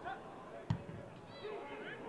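A football kicked once, a single sharp thud about two-thirds of a second in, with players shouting on the pitch.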